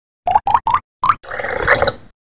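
Sound effect for an animated logo intro: four short pops, each sliding up in pitch, the first three in quick succession and the fourth after a brief gap, then a longer whooshing swell.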